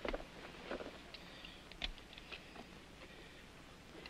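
Faint handling sounds: a few soft, scattered clicks and rustles as hands pass a small object, over steady soundtrack hiss.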